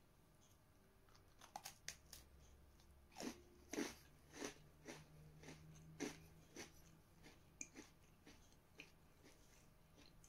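Chewing a mouthful of crunchy Oreo cookie: a few sharp crackles about a second and a half in, the loudest crunches around three to four seconds, then steady chewing about twice a second that thins out near the end. Faint overall.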